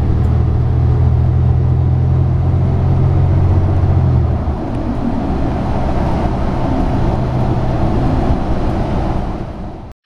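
Engine and road noise of a New Flyer Xcelsior XN60 articulated bus heard from inside the cabin, its Cummins ISL engine pulling with a strong low drone. About four seconds in the drone eases off and a lower rumble of engine, tyres and road noise carries on as the bus keeps moving.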